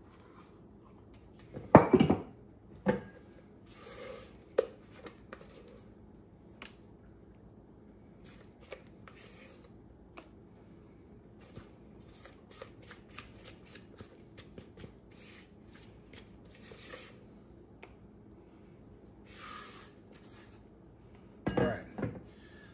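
Metal measuring cup and spatula knocking and scraping against a stainless steel mixing bowl while thick cake batter is scooped out. Two loud clanks come about two and three seconds in, followed by a long run of light scrapes and clicks, with another clank near the end.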